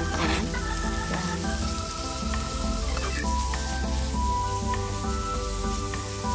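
Ground pork sizzling in a nonstick wok as a metal spatula breaks it up and stirs it, under background music with long held notes.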